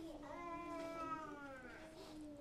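A young child's faint, drawn-out vocal whine: one long call that rises slightly in pitch and then sinks, lasting almost two seconds.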